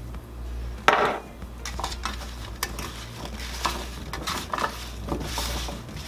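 Cubes of raw butternut squash being tossed by hand in a metal baking pan, giving many small irregular knocks and scrapes against the pan, after one sharp knock about a second in.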